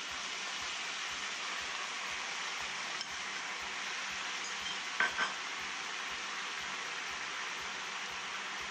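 Spam slices sizzling in a frying pan as a soy sauce and sugar mixture is poured over them: a steady frying hiss. Two short clinks of dishware about five seconds in.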